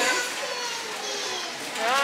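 Indistinct voices, including a high child-like voice, over a store's background hum; a clearer nearby voice begins near the end.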